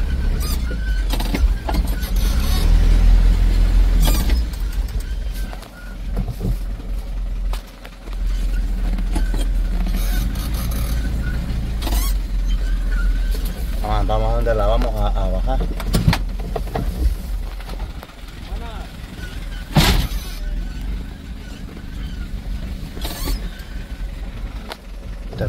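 Inside a vehicle's cabin, heard while driving slowly over a rough dirt track: a steady low engine-and-road rumble with scattered knocks and rattles from the body jolting over bumps, the sharpest knock about 20 seconds in.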